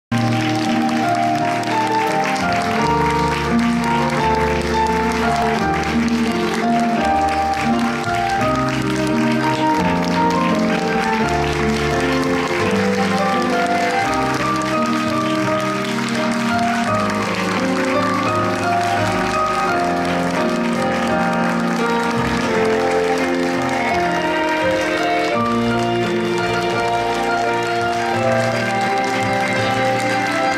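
Curtain-call music from a stage musical, with the theatre audience applauding over it.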